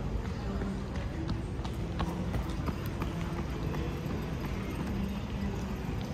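Footsteps on paved street, short irregular taps over a steady low city hum, with faint distant voices.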